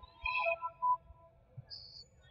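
Voices carrying in a school gymnasium, with a short high-pitched squeak near the end.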